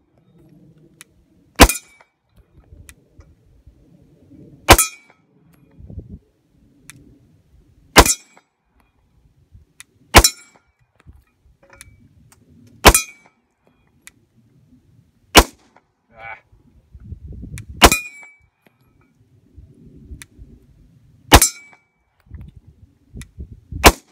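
Sig Sauer P320 pistol fired nine times in slow, deliberate fire, one shot every two to three seconds. Each shot is followed by a brief metallic ring, typical of the bullet striking a distant steel target.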